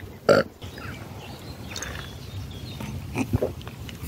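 A single short burp about a third of a second in, from a man who has just drunk a fizzy black-cherry soda, followed by a low steady rumble.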